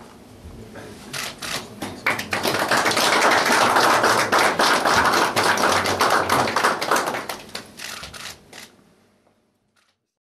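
Applause from a small audience. A few scattered claps build about two seconds in into steady clapping, which thins out and dies away in the last couple of seconds.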